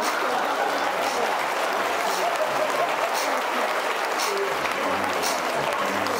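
Theatre audience applauding, a steady clatter of many hands clapping.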